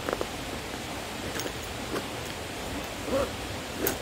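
A nylon sling pack being handled, with a few faint, light clicks and rustles as its zippers and pockets are worked, over a steady background hiss.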